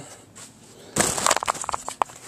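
Rustling, crackling handling noise with many small clicks as the camera is picked up and moved, starting about a second in and lasting most of a second.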